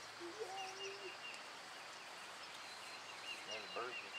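Faint birdsong: short, high chirps repeating several times a second. The birds are singing as though night were falling, set off by the eclipse's darkening sky.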